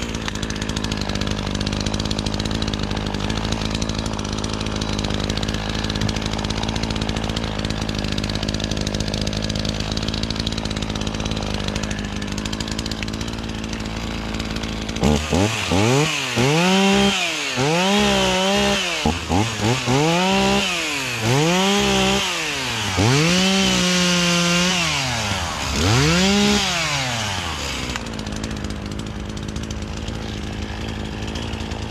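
ECHO CS450P two-stroke chainsaw idling steadily for about fifteen seconds, then throttled up in a run of short revs as it cuts through limbs and brush. Each rev climbs and drops back, with one held at full speed longer in a steady cut. It settles back to idle a few seconds before the end.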